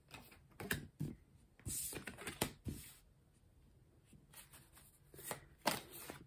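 A deck of tarot cards being shuffled by hand: a run of short papery flicks and rustles in the first few seconds, a pause, then a few more near the end.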